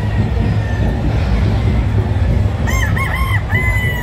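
Gamefowl rooster crowing near the end, a call broken into a few short notes and then a longer held one, over a steady low din from the hall.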